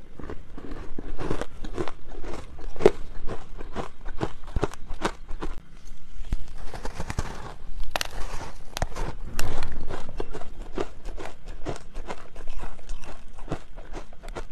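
Close-miked biting and chewing of a frozen block of packed ice coated in matcha powder: a dense, irregular run of crisp crunches, loudest in a cluster just past the middle.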